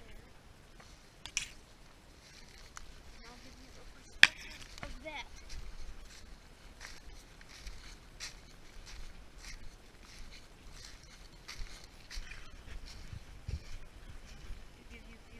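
Footsteps and rustling of dry leaves, grass and brush as someone pushes through thick undergrowth, a steady run of scattered crunches and scrapes. A sharp knock about four seconds in is the loudest sound, with a smaller one a little over a second in.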